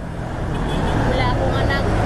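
A motor vehicle passing close by on the road, its engine and tyre noise growing steadily louder, with a faint voice over it.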